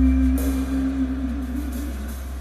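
Live jazz quartet in a slow ballad: one long held note over a deep sustained bass note, its pitch wavering near the end as it eases off.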